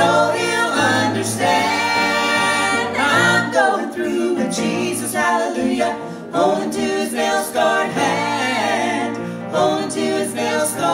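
Three voices, two women and a man, singing a gospel song together in harmony through microphones, with long held notes.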